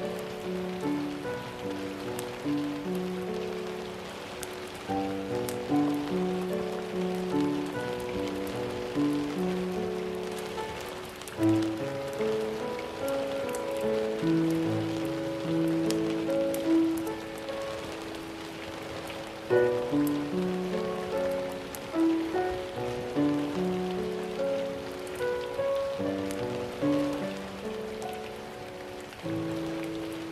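A background ambience track of gentle, slow melodic music mixed with the sound of steady rain, with scattered raindrop ticks.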